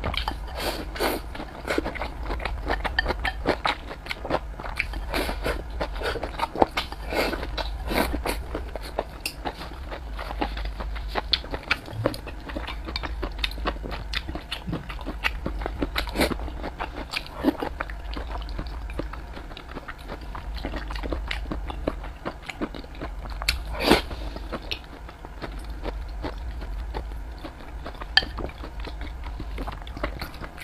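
Close-miked chewing and biting of rice and stir-fried food: a dense, irregular run of small wet clicks and smacks, with one louder click about 24 seconds in, over a steady low hum.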